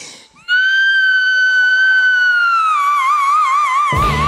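A woman's voice holding one long, very high sung note into a microphone; about two-thirds of the way through, the note drops a little in pitch and goes into a wide, slow vibrato.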